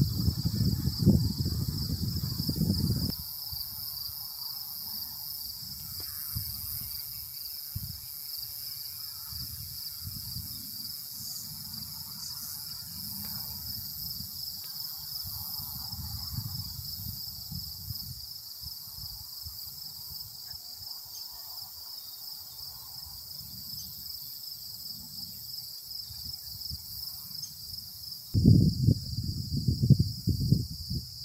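Steady chorus of insects, a rapid pulsing high trill like crickets. Wind rumbles on the microphone for the first three seconds and again near the end.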